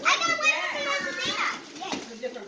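A young girl's excited, high-pitched voice, a wordless squeal for about a second and a half that then fades.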